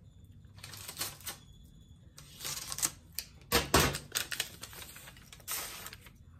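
A paper envelope and card being handled: crinkling and rustling paper in several short bursts, with a louder knock about three and a half seconds in.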